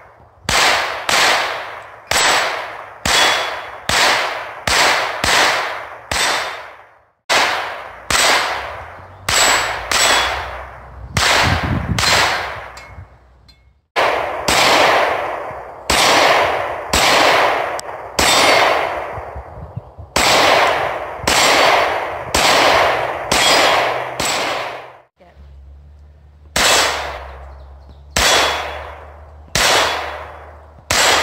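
Strings of pistol shots fired one after another, about one to two a second, each a sharp report with a short decaying echo, with some hits ringing on steel plate targets. The strings break off abruptly a few times.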